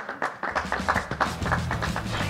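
A small group clapping, with rapid uneven claps. Music with a steady bass line comes in about half a second in and continues under the clapping.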